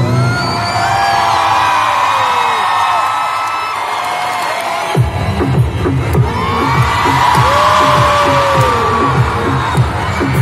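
Live pop music at an arena concert heard from within the crowd, with the audience cheering and whooping. About halfway a pulsing beat with heavy bass kicks in.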